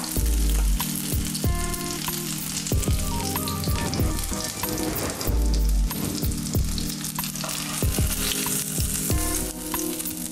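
Battered whiting fillets sizzling in hot oil in a frying pan as a spatula lifts them out, with background music and a low bass note about every five seconds.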